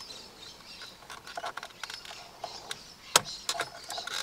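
Small plastic wiring-harness connectors being handled and plugged in behind a steering wheel: light ticks and rustles, with one sharper click a little after three seconds in as a connector latches.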